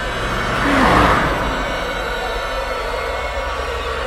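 A car speeding past, its sound swelling to a peak about a second in and then dropping in pitch as it goes by, over a steady, low, ominous horror-music drone.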